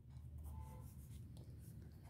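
Pen scratching faintly on paper as a word is handwritten.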